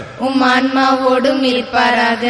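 A single voice chanting a liturgical response in long, steady held notes. There are two phrases, with a short break about three-quarters of the way through.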